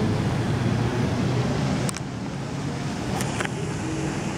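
Steady low background noise of a large, empty airport terminal hall, mixed with the handling noise of a hand-held camera being carried and panned. A few brief sharp clicks come about two seconds and about three seconds in.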